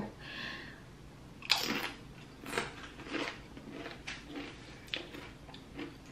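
A tortilla chip bitten with a sharp crunch about one and a half seconds in, then chewed with several softer crunches.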